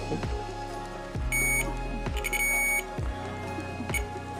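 Digital multimeter's continuity buzzer beeping twice, a short high beep just over a second in and a longer one a second later, as the probes close a circuit between the red wire and a terminal of a 3.5 mm headphone plug. The beep signals continuity, marking the red wire as the right-channel conductor. Background music with a steady beat runs underneath.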